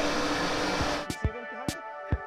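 A steady noisy hum cuts off about a second in, and background music with a steady beat of sharp percussion strikes and held notes begins.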